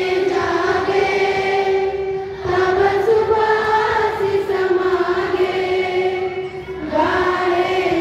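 A large group of school students singing together in long held notes, in phrases a few seconds long with a breath about two and a half seconds in and another near the end.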